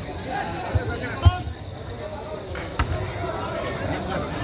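Footvolley ball being struck by players during a rally: three dull thumps, the loudest about a second in, over crowd chatter.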